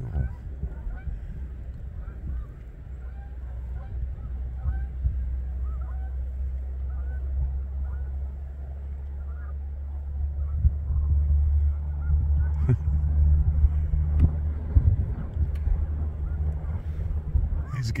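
A large flock of snow geese calling in the distance, many short rising yelps overlapping, over a steady low rumble that grows louder about ten seconds in.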